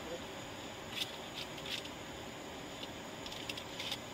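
Steady low background hiss of an outdoor street scene, with a few faint clicks about a second in.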